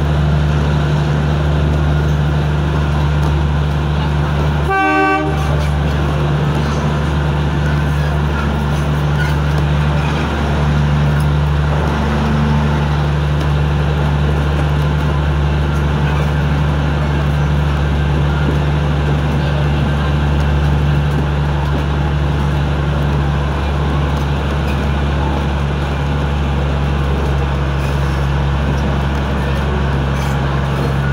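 Heritage train moving slowly, with a steady low engine drone throughout. About five seconds in there is a single short toot.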